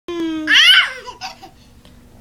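Toddler's high-pitched shriek of laughter about half a second in, followed by a few softer giggles. It is preceded by a brief steady held note.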